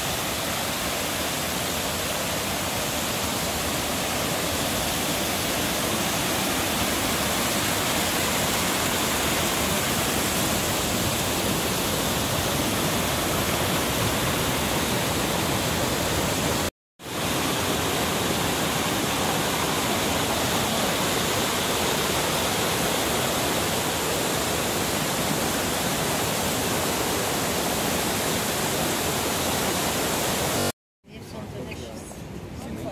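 Small waterfalls cascading over moss-covered rock steps, a steady loud rush of falling water. The sound cuts out for a split second about halfway through, then carries on unchanged.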